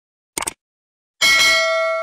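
A short click sound effect, then about a second in a bright bell ding that rings on with several tones and slowly fades: the sound effects of a subscribe-button click and a notification bell ringing.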